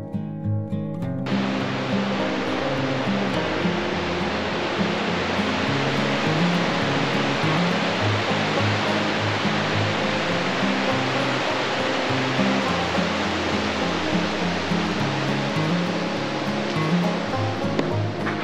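Whitewater creek rushing and cascading over rocks: a steady, even rush of water that comes in about a second in and stops suddenly near the end. Acoustic guitar music plays underneath.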